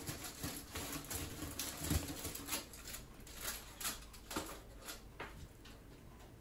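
Crumpled aluminium foil crinkling and rustling in irregular crackles as it is handled and pulled off the top of a homemade metal steamer tube, with a soft knock about two seconds in; the crackling dies away after about five seconds.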